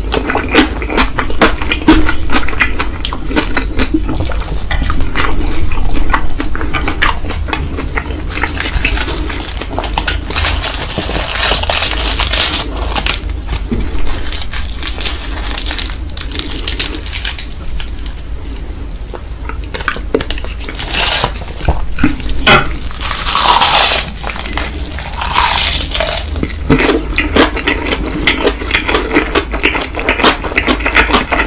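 Close-miked eating sounds of stir-fried Indomie Mi Goreng instant noodles with roasted seaweed and kimchi: wet chewing and mouth sounds as a dense run of small smacking clicks. Two louder, hissing stretches stand out, one about nine seconds in lasting a few seconds and another about twenty-three seconds in.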